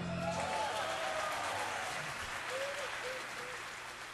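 Audience applauding, slowly dying away.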